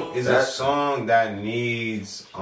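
A song playing: a male voice singing long held notes that bend in pitch.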